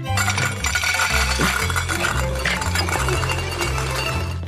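Dry dog kibble pouring in a steady stream from a food dispenser into a metal bowl, a continuous clinking rattle, over background music.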